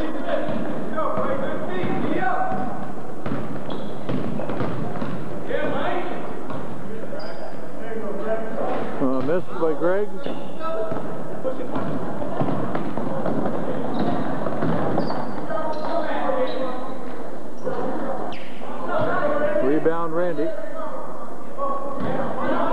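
Indistinct crowd and player voices in a gym, with a basketball bouncing on the hardwood floor and scattered thuds of play.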